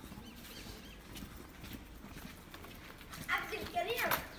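Faint scattered taps of a small child's sandalled footsteps on wet pavement as he walks a small bicycle, then a short burst of a child's voice near the end.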